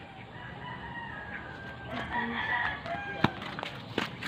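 A rooster crowing: one long drawn-out crow that swells about two seconds in, followed by a few sharp taps near the end.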